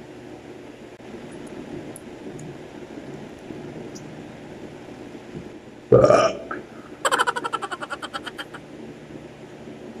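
A man burps loudly about six seconds in, a belch that trails into a rapid rattle for a second or two.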